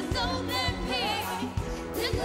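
A female lead singer sings a pop-soul song live with wide vibrato. An orchestra and a drum beat play steadily under her.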